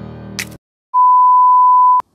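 The tail of an intro music sting ends with a click about half a second in. After a brief gap, a loud electronic beep at one steady pitch sounds for about a second and cuts off sharply.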